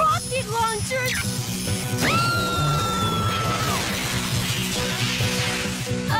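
Cartoon soundtrack music under a sci-fi beam sound effect. About two seconds in, a tone shoots up, holds for about a second and a half, then drops away into a rushing noise that fades out near the end.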